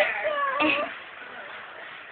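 A girl's high-pitched, drawn-out vocal sound with a wavering pitch during the first second, trailing off.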